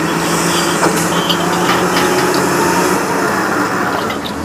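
A motor running steadily with a low, even hum, and a few light clicks and knocks over it.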